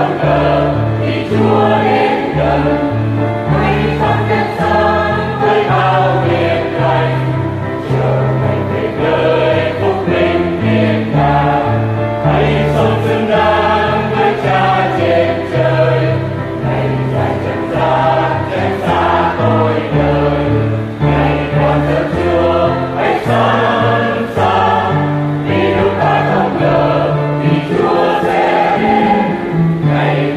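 Church choir singing a Vietnamese Catholic hymn with instrumental accompaniment and a bass line of held low notes.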